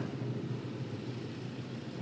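Steady, low hum of a motorcycle ride at slow speed through queued traffic, with engine and road noise.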